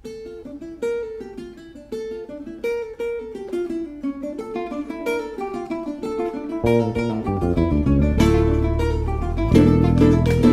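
Venezuelan cuatros playing a joropo tune, opening with a plucked single-note melody that steps downward. About two-thirds of the way in an electric bass joins with low notes, strummed cuatro chords fill in, and the music grows louder.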